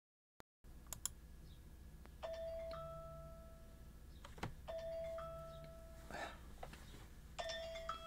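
Faint opening of a hip-hop type beat: a bell-like two-note melody, a lower held note joined by a higher one, repeating about every two and a half seconds after a half-second of dead silence.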